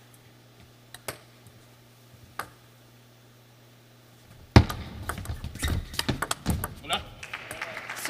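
Table tennis ball and paddles in play: a few separate clicks of the ball being bounced and served, then a sharp loud hit about four and a half seconds in, followed by a denser run of clicks and thumps as the rally plays out.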